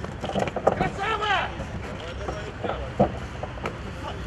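A man's short shouted calls, their pitch rising and falling, over outdoor noise, with a few sharp knocks and thuds as a service dog scrambles over a wooden wall obstacle.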